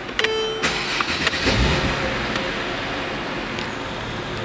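A 2012 Mercedes-Benz E350's V6 engine is started. A short tone sounds near the start; the engine catches about a second and a half in, flares briefly, then settles into a steady idle.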